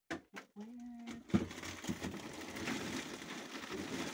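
An upright freezer door opening with a sharp knock about a second in, followed by about three seconds of continuous crinkling and rustling of plastic zip-top freezer bags as frozen produce is handled.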